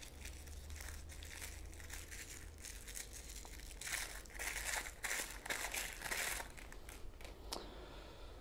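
Small clear plastic wrapping crinkling as a ring is unwrapped by hand, faint at first and louder in bursts through the middle. A light click near the end.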